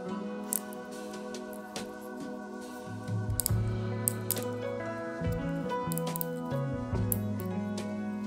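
Instrumental background music with sustained pitched notes; a bass line comes in about three seconds in.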